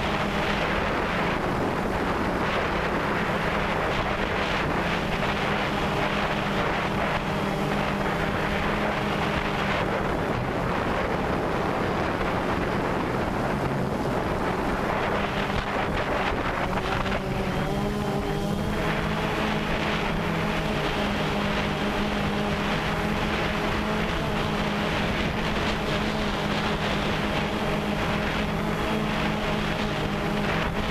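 DJI Phantom 2 quadcopter's electric motors and propellers buzzing steadily, heard from the GoPro camera carried on the drone, with wind on the microphone. The pitch wavers and shifts about two-thirds of the way through as the motors change speed.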